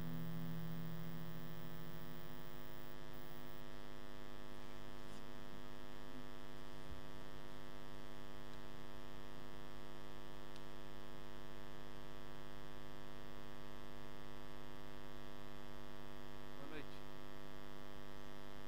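Steady electrical mains hum with many even overtones through the church sound system, which the preacher puts down to a faulty earphone making noise. A low held tone dies away in the first couple of seconds.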